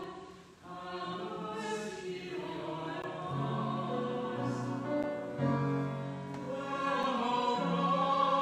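Choir singing slow sacred music in long, held chords over a low moving line, with a short break between phrases about half a second in.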